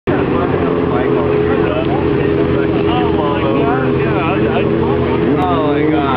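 A sportbike's engine running steadily at low revs, with people's voices talking over it.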